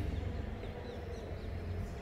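Chalk writing on a blackboard: a few faint, short, high squeaks in the first part, over a low steady hum.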